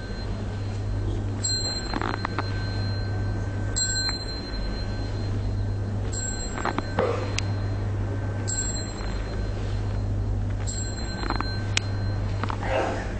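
A small high-pitched ritual bell struck five times, about every two seconds, each strike ringing briefly; it paces the bows to the Buddha image. A steady low hum runs underneath.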